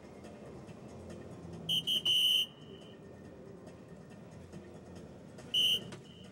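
Electronic soft-tip dartboard beeping as it registers darts: two short high beeps and a longer one about two seconds in, and another short beep near the end. The tones mark scoring hits in the 19, a triple and a single.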